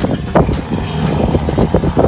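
Zipline trolley rolling along its overhead steel cable: a steady rumble with a rapid clatter of small ticks.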